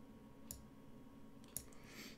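Two faint, sharp computer mouse clicks about a second apart, as a chess piece is picked up and dropped on an on-screen board, over near-silent room tone.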